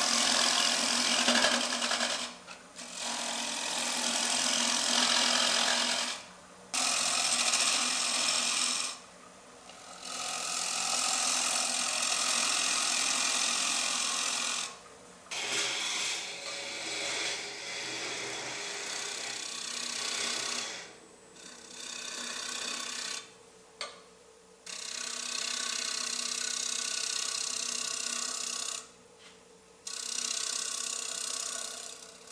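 A bottom feeder bowl tool cutting the inside of a basswood bowl turning on a lathe, peeling off shavings with a rough, steady rasping hiss. The cutting comes in about seven passes of a few seconds each, with short gaps between them.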